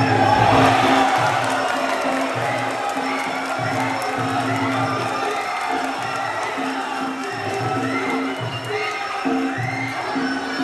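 Sarama, the Muay Thai fight music: a wailing pi java (Javanese oboe) melody over a steady beat of drums and small cymbals. A crowd cheers and shouts over it, loudest in the first second as a fighter goes down, then dying back under the music.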